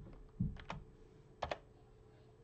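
A few scattered taps on a computer keyboard, the last two in quick succession about a second and a half in.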